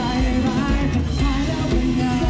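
Live band playing amplified pop-rock through the stage speakers, a singer's voice carrying the melody over drums, bass and guitar with a steady beat.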